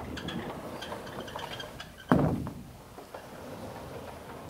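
Vertically sliding whiteboard panels being moved in their frame: a rolling, clattering rumble, then one loud thud about two seconds in.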